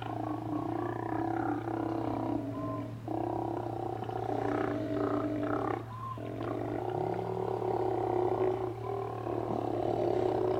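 Steller sea lions roaring: long, continuous roars that overlap one another, with brief pauses about three and six seconds in.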